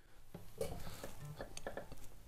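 Acoustic guitar being handled and lightly plucked: a few faint, scattered notes and finger clicks on the strings.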